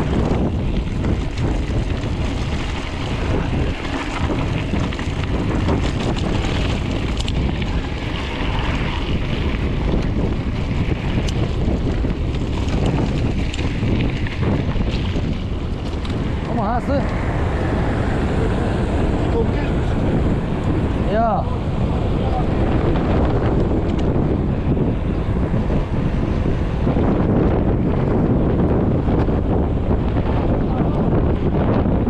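Wind buffeting the microphone of a handlebar-mounted action camera on a moving mountain bike, a loud, steady rushing throughout. Two brief wavering tones stand out near the middle.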